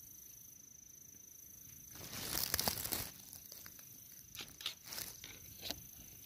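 Dry leaf litter rustling and crackling: a louder burst of rustle about two seconds in, then scattered sharp crackles near the end.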